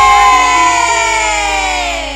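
An electronic keyboard in a campursari band holds a sustained chord that slowly bends down in pitch and fades, with no drums under it.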